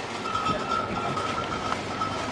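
Empty wire shopping trolley rolling and rattling over paving, with a steady high whine running alongside.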